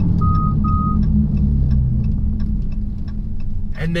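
6.4-liter HEMI V8 and road noise droning steadily inside the car's cabin while driving. Two short electronic chime beeps sound in the first second.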